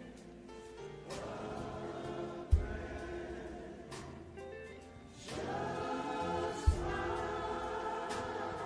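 Gospel music with a choir singing, growing louder about five seconds in. Two deep thumps come about two and a half and six and a half seconds in.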